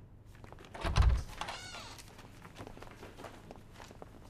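People rising from a meeting table: a heavy thump about a second in, then a short squeal of a chair scraping across the floor, followed by light knocks, footsteps and paper handling.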